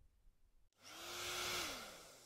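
A rushing-air whoosh sound effect that swells up about a second in and fades away, with a faint hum that rises, holds and falls with it.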